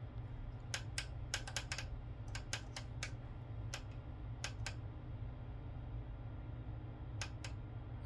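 Push button on a Klim Ultimate RGB laptop cooling pad clicked repeatedly, stepping the LED rim through its colour modes. The sharp clicks come in quick clusters through the first half and twice more near the end, over a steady low hum.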